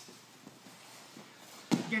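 Faint scuffling of wrestlers' bodies and shoes shifting on a foam wrestling mat, then a single sharp thump near the end.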